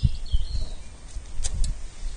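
Low, irregular thumps and a light click as gloved hands work the contact-breaker (points) box of a Citroën 2CV engine, turning it to set the ignition timing.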